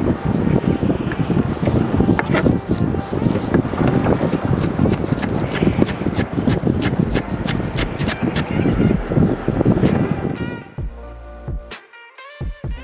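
Chef's knife chopping herbs on a plastic cutting board: a quick run of sharp knocks, several a second, over wind and water noise. About eleven seconds in the chopping cuts off and guitar music carries on.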